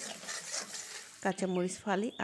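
Sliced onion and green chili sizzling in hot oil in an iron karahi while a metal spatula stirs and scrapes the pan. A woman's voice comes in past the middle.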